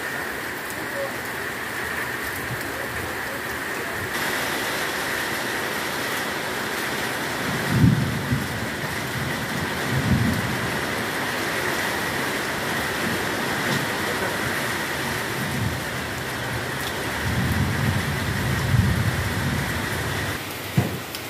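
Heavy rain falling steadily, an even hiss of drops on ground and leaves. A few short low rumbles stand out, the loudest about eight seconds in, with a longer rumbling stretch near the end.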